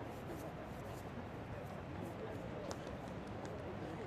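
Stadium background ambience: indistinct distant voices over a steady hiss, with a few faint clicks.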